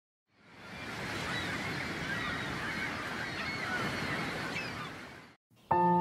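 Outdoor ambience fading in and then out: many small bird calls over a steady rushing noise. Just before the end, music with bell-like held tones starts abruptly.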